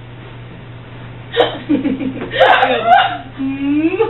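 A girl laughing hard in gasping, hiccup-like bursts, starting about a second and a half in and rising to a squeal near the end, over a low steady hum.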